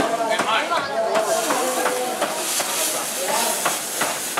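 Food sizzling and hissing in a wok stir-fried over an open flame, the hiss growing louder in the second half as the pan flares up. Crowd voices chatter throughout.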